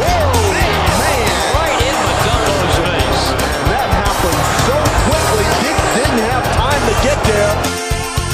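Basketball game sound under background music: many short squeaks gliding up and down, like sneakers on a hardwood court, with a ball bouncing. The squeaks stop shortly before the end while the music carries on.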